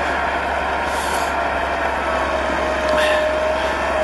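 Caterpillar D8 crawler bulldozer's diesel engine running steadily as the dozer drives in high gear, with a steady whine that sinks slightly in pitch.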